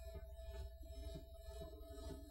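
A pause in speech: faint room tone with a steady low hum and a thin, steady higher tone.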